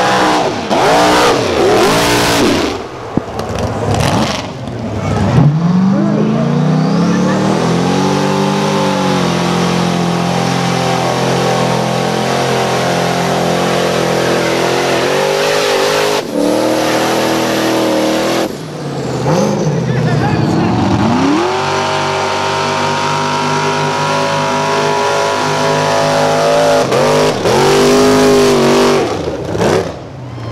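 Engines of modified mud-racing trucks revving hard as they launch down a mud track, one run after another. Twice the pitch climbs steeply and then holds at high revs for several seconds.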